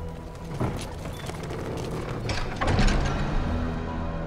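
Dramatic film score whose held tones drop out for a noisy rush with two falling swooping hits, one about half a second in and a louder one near three seconds, before the sustained music returns near the end.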